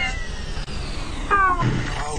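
A short, high-pitched cry, its pitch falling slightly, about one and a half seconds in, over a steady background hiss.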